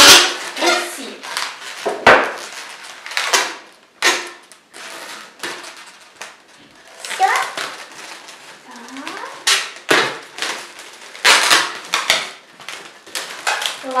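Long latex modelling balloons squeaking and rubbing as they are twisted and bent into a bunny figure: a run of sharp squeaks and rubs, a few of them gliding upward in pitch.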